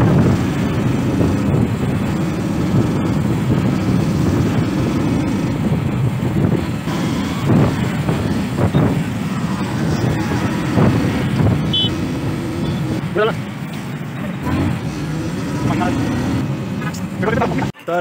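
Wind buffeting the microphone of a moving motorcycle, over the bike's engine and passing road traffic. The sound cuts off abruptly just before the end.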